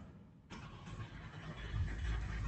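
Typing on a computer keyboard, over a low rumble that swells toward the end.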